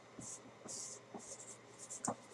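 Faint scratching, about four short strokes spread over two seconds.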